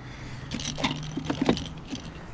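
A run of light clicks and metallic rattling as a landing net holding a trout is handled in a kayak, with the treble-hooked topwater lure and net clattering, over a faint steady hum.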